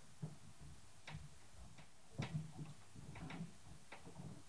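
A few faint, irregular clicks and soft knocks over quiet room tone, loudest a little after two seconds in.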